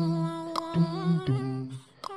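Wordless vocal intro music, a nasheed: voices humming held notes that step from one pitch to the next, dying away near the end.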